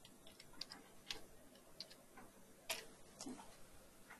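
Faint, irregular clicks of computer keyboard keys being typed, with a sharper click a little under three seconds in.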